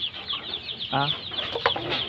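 A flock of young chickens in a coop clucking and peeping, a dense run of short high calls.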